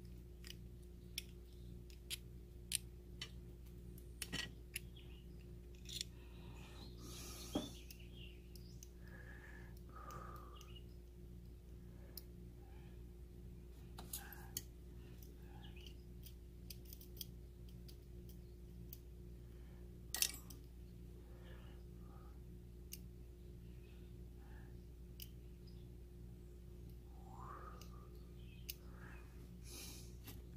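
Small metal clicks and taps from a jeweler's screwdriver and the tiny screws and cover plate of a dial test indicator being taken apart, coming irregularly with the sharpest click about twenty seconds in, over a steady low hum.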